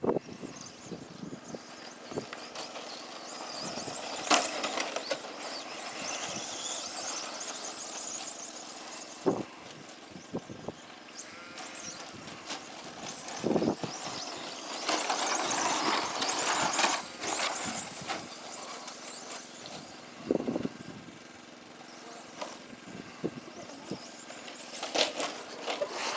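Radio-controlled short course trucks racing on a dirt and grass track: a high motor whine and tyre noise that swell and fade as the trucks pass, loudest a little past the middle, with a few sharp knocks.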